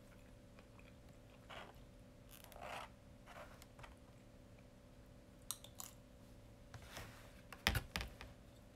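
Faint handling noises close to the microphone: a few soft rustles early on, then scattered sharp clicks, the loudest a sharp knock near the end, over a steady low hum.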